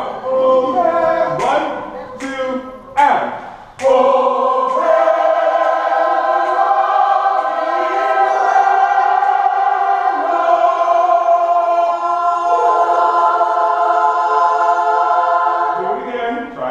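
Large mixed community choir singing a cappella: a few short sung syllables with sharp consonants, then from about four seconds in one long held chord, its notes shifting about twelve seconds in.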